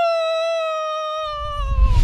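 A long, high-pitched human scream held on one note, then sliding down in pitch and fading out near the end. A deep rumble swells in underneath from just over a second in.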